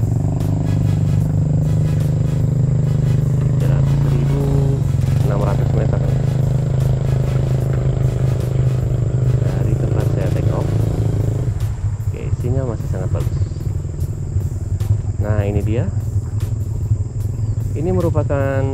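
An engine running steadily with a low rumble, easing off about two-thirds of the way through.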